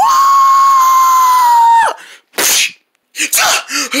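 A person screams one long, high, steady note for nearly two seconds, cut off with a slight drop in pitch. A sharp breathy gasp follows, then more gasping breaths as speech begins near the end.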